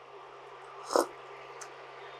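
A single short slurping sip of hot herbal tea from a glass cup, about a second in, over a faint steady low hum.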